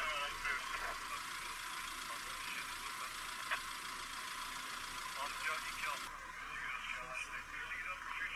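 Indistinct voices of onlookers talking over outdoor street noise, the sound thin and tinny. A single click about three and a half seconds in, and the background changes abruptly about six seconds in.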